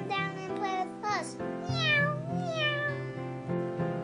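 A child's voice making high meow calls that fall in pitch, a few short ones followed by one longer wavering meow in the middle, over steady background music.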